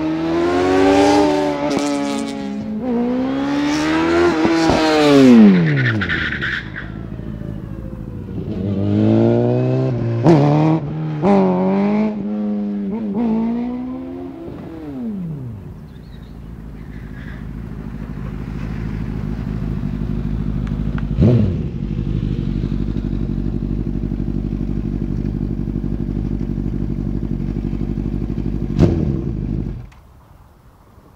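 Honda CBR Fireblade inline-four sportbike engine revving hard in repeated rising sweeps, each broken off by a drop in pitch, through the first half. It then runs at a low, steady note that grows louder as the bike comes closer, with two sharp knocks in the later part.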